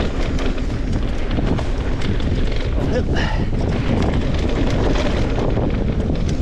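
Wind buffeting the microphone of a mountain bike riding fast down a dirt singletrack. Under it are the rumble of the tyres and a steady scatter of rattling clicks from the bike over the bumps.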